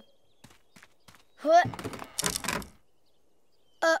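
Cartoon sound effect of a rickety wooden bridge plank: a few light taps, then a loud creaking thunk lasting about a second, starting about one and a half seconds in.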